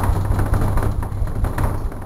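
A fist pounding rapidly on a panelled interior door, a dense run of thumps and knocks with a heavy low rumble.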